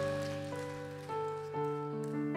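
A keyboard plays soft, sustained piano chords, with a new note entering about every half second. It is the start of a worship song's introduction, before any singing.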